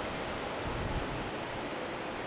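Steady beach wind and surf noise, with low gusty rumbles of wind on the microphone a little under a second in.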